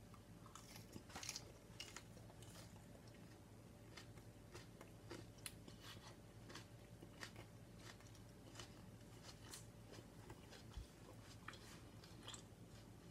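Faint crunching clicks of a person biting and chewing a raw Congo Peach chilli pod, scattered irregularly throughout.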